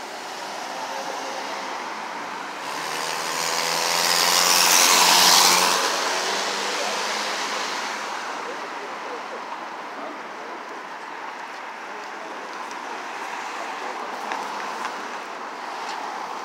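A car passing close by, its engine and tyre noise rising to a peak about five seconds in and then fading. Steady city street and traffic noise runs under it.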